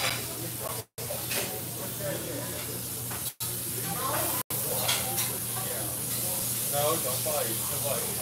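Diner room noise: a steady hiss and low hum with faint voices of other people in the background. The sound cuts out completely three times for an instant, in the first half.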